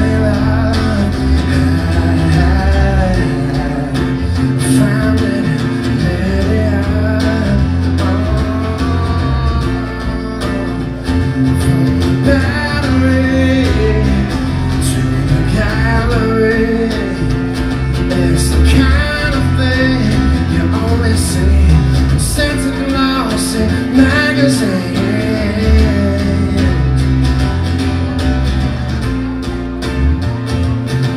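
Live acoustic rock band playing, recorded from the audience: acoustic guitar over bass and drums, with a male voice singing the melody.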